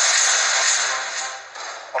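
A dramatic TV-drama sound effect: a long hissing swish that fades away over about a second and a half, over background music.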